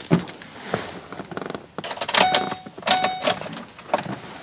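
A few handling clicks, then the dashboard warning chime of a 2010 Ford Explorer sounding twice, a short steady electronic tone each time, as the ignition is switched on and the gauge cluster lights up.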